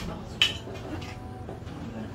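A single sharp clink of a spoon against a bowl, about half a second in, over a low steady background hum.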